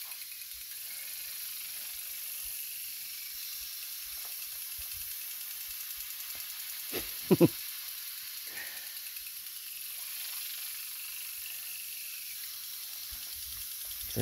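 Lawn sprinkler spraying water in a steady high hiss, with water falling over a dog standing in the spray.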